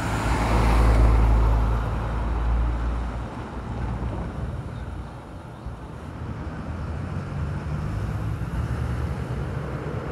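A vehicle passing close by, loudest about a second in and fading away over the next two seconds, leaving a steady low rumble.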